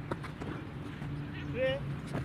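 A shouted one-word drill command, a short call that rises in pitch about one and a half seconds in, over a steady low hum, with a couple of faint knocks early on.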